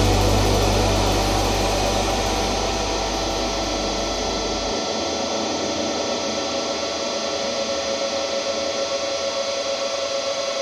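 A sustained wash of distorted electric-guitar noise and feedback, with several steady ringing tones, closing out a noise-rock song. It fades slowly over the first few seconds, and a low bass drone cuts off about five seconds in, leaving the hiss and tones.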